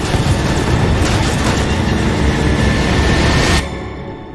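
Loud, dense air-combat noise from a bomber battle scene mixed with the music score. It cuts off suddenly about three and a half seconds in.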